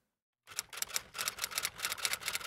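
Typewriter key-click sound effect: a quick run of sharp mechanical clicks starting about half a second in, after a moment of dead silence.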